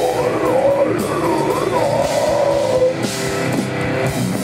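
Live heavy metal band playing loudly and without a break: distorted electric guitars over a drum kit, with a wavering melodic line on top.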